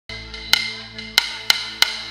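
Live band music: a keyboard holds a steady chord, punctuated by four sharp percussion clicks, before the full song comes in.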